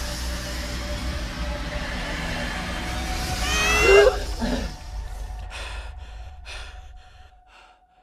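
Horror trailer sound design: a dense, low rumbling drone swells to its loudest about four seconds in. At that peak a human gasp slides down in pitch, then a few short pulses fade away to silence near the end.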